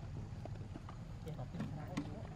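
People talking indistinctly, with scattered short clicks and taps.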